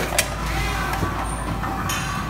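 Food-line counting and tray-filling machine running: a steady low hum, with sharp metallic clacks at the start and about a fifth of a second in, a lighter one about a second in, and a brief hiss-like burst just before the end.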